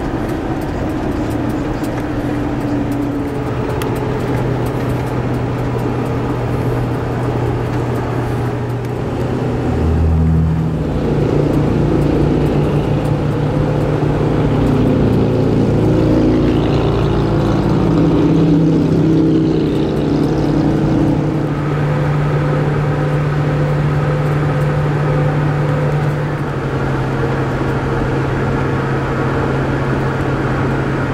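Steady engine drone and road noise inside the cab of a large diesel vehicle at highway speed; the engine's pitch steps up about ten seconds in and holds there.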